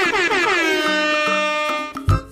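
Cartoon-style sound effect: a horn-like tone that drops in pitch several times in quick succession, then holds one steady note that fades out near the end.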